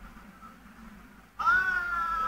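A young man's high, drawn-out yell that starts suddenly about one and a half seconds in and holds its pitch, sinking slightly. It is heard through a TV speaker.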